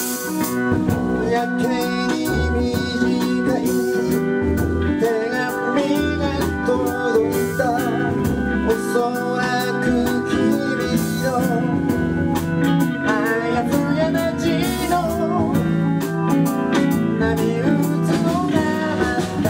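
Live band playing a blues-rock song: electric organ, electric guitar, electric bass and drum kit together, with a steady drum beat under the organ and guitar lines.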